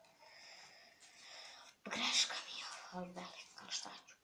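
A girl's soft whispering and breathy vocal sounds. A louder hissy breath comes about two seconds in, and a short voiced sound follows about a second later.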